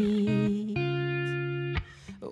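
Telecaster-style electric guitar picking chords that ring out, moving to a new chord about a quarter second in and again just before the second, then falling away near the end.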